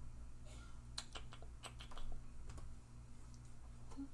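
A run of light clicks and taps, bunched in the first three seconds, as small objects are picked up and set down, over a low steady hum.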